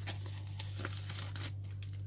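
Sticker sheets and a clear plastic binder sleeve crinkling and rustling as the sheets are slid in and out of the pocket, a run of quick crackles that is thickest in the middle. A steady low hum runs underneath.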